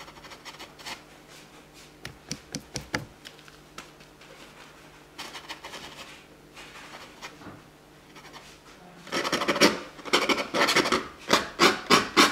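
Stiff bristle brush dry-brushing oil paint onto a stretched canvas, over a semi-dry layer. Soft, scattered scratchy strokes give way to a run of quick, louder scrubbing strokes about nine seconds in.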